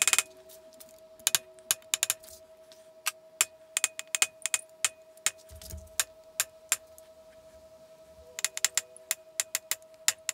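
Light metal-on-metal taps of a hammer striking a steel punch, peening the rim of the drilled hole over a carbide ball bearing to lock it into a hammer face. The taps come in quick, irregular runs, sparse for a couple of seconds past the middle and then a fast cluster near the end, over a faint steady ring.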